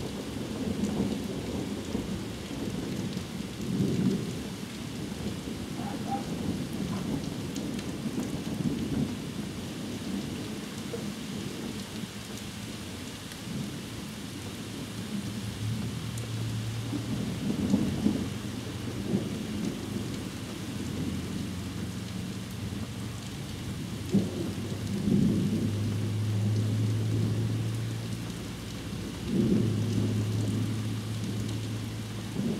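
Heavy rain falling steadily through a thunderstorm, with thunder rumbling and swelling every few seconds.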